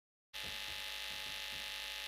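Dead silence, then about a third of a second in a steady electrical hum and buzz switches on and holds unchanged: the live-stream audio line coming back up.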